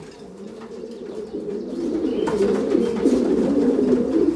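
Racing pigeons cooing, a low, wavering murmur that grows louder from about a second in.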